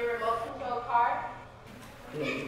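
A person speaking through the first second or so, then a short, quieter pause in the voice.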